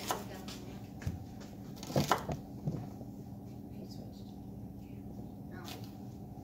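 A kitchen knife slicing an onion into rings on a plastic cutting board: a few scattered, irregular knocks and cuts against a low steady room hum.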